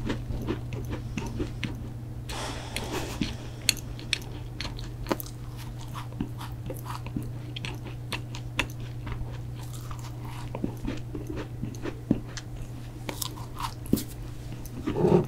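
Close-miked biting and chewing of a protein cookie: a bite, then steady chewing with crisp crunches and small mouth clicks throughout, densest a couple of seconds in.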